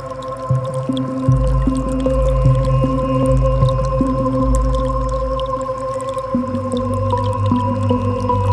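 Ambient music of long, held synth tones over a low drone whose notes change every few seconds. A faint creek-water trickle is mixed in beneath.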